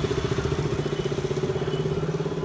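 Motor vehicle engine idling: a steady, loud low hum with a fast, even pulse.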